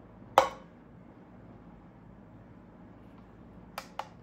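A plastic measuring jug set down on a Belita glass-topped digital kitchen scale: one sharp knock with a short ring about half a second in. Near the end comes a lighter tap of a fingertip on the scale's glass as its zero key is pressed.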